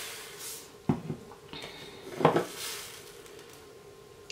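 Tiny sugar nonpareil sprinkles poured from a small container, hissing and scattering onto a cookie and a plastic tray, with a few light clicks; the loudest click comes just after two seconds.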